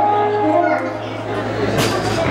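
Several people's voices in a large hall, over a steady low hum that stops near the end.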